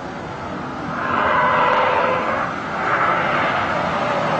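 Car tyres screeching as a car slides sideways in a drift. The sound swells about a second in, dips briefly, then rises again.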